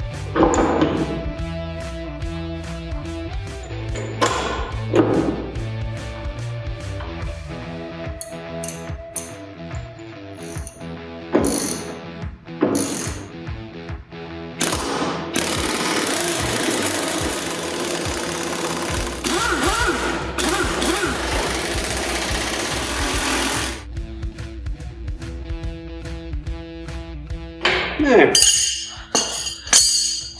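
Pneumatic impact wrench running for about eight seconds in the middle, tightening the locking nuts on the bolts that hold a NATO towing hitch to the hull, over background music. Sharp metal knocks come before and after it as the hitch and bolts are handled.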